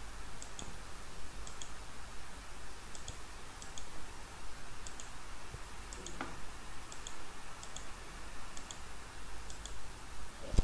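Computer mouse button clicking repeatedly, about once a second, each click a quick press-and-release pair, as drawing lines are selected one by one.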